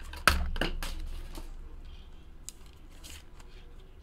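Hard plastic card holders clicking and clattering as they are handled. One sharp click comes about a quarter second in, a few more follow within the next second, and fainter taps come after.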